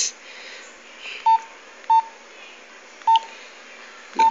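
Mobile phone keypad beeps: three short key-press tones of the same pitch, unevenly spaced, as the handset's menus are stepped through. Faint steady hiss behind them.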